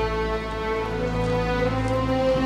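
Background music: a slow, sad score of long held notes over low sustained tones, with the low notes shifting once partway through.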